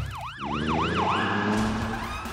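Emergency-vehicle siren in a fast yelp: four quick rising-and-falling wails, then it settles into a held high tone, over a low, steady music bed.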